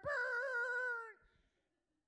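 A man's voice imitating a shofar blast into a microphone: one loud, held, horn-like note with a slight waver, about a second long, that fades out.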